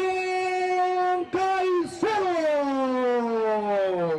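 A voice drawing out long held notes: one steady note for just over a second, a short second note, then a long note that slides steadily downward in pitch.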